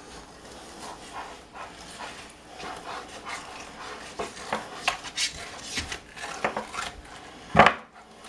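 A fillet knife scraping and slicing between skin and meat as catfish skin is pulled off a fillet with skinning pliers on a plastic cutting board: irregular short scrapes and ticks, with one louder knock near the end.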